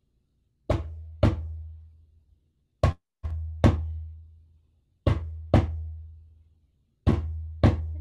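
Small djembe played in the heartbeat rhythm: four double beats, about one every two seconds, each stroke leaving a low ringing boom that fades before the next pair.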